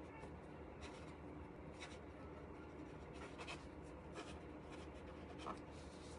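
Faint, irregular short scratches and rustles, about one or two a second, over a steady low room hum.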